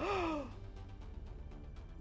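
A man's short, breathy laugh, falling in pitch in the first half second, then only a faint low music bed.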